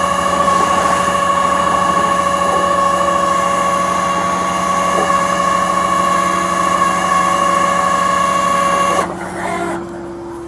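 Flatbed tow truck's hydraulic winch running steadily under load with a constant whine over the truck engine as a car is winched up onto the bed, cutting off abruptly about nine seconds in, leaving a lower, quieter hum.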